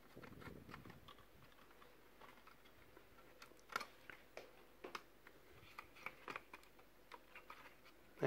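Near silence with a few faint, short clicks spread through the second half: a small screwdriver and tiny screws being handled while the heatsink screws are taken out of an opened laptop.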